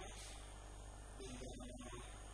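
Steady low electrical mains hum with a faint high whine, at low level and with no clear event.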